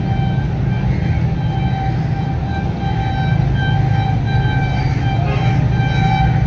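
Horn of an approaching locomotive sounding a series of short, patterned toots from a distance over a steady low rumble.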